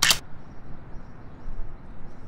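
A single sharp camera shutter click right at the start, followed by steady outdoor background noise.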